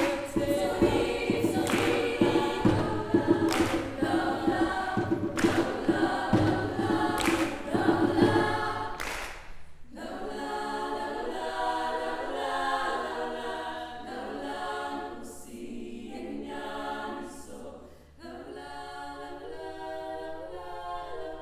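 Women's choir singing a cappella. For the first half, a percussive beat lands about every two seconds under loud, busy singing. The beat then stops and the choir carries on with slower, quieter held chords.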